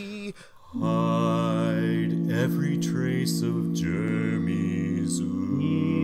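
Barbershop quartet singing a cappella in close harmony: held chords that break off briefly about half a second in, then resume and sustain.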